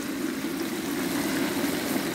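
Ground chile paste for mole frying in hot oil in a clay cazuela: a steady, dense sizzle and crackle of bubbling oil.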